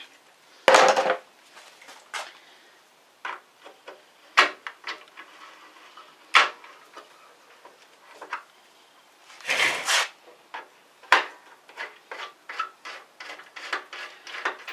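Hand tools clicking and knocking against metal as bolts on a motorcycle's rear fender are worked with a wrench: scattered clicks, two louder clatters about a second in and near ten seconds, then a run of quicker small clicks near the end.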